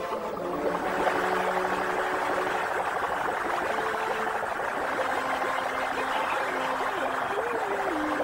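Cartoon sound effect of a whirlwind-driven waterspout: a steady rushing of wind and water that swells about a second in and holds. Soft orchestral music plays beneath it, with a wavering melody near the end.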